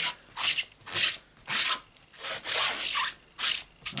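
A cleaning pad scrubbed back and forth over a red-rubber background stamp, about six scraping strokes roughly two a second; the pad has not been wetted and is thought to be still dry.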